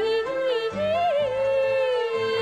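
A woman singing in Cantonese opera style: one long held note that slides up and back down about a second in, with a slight waver.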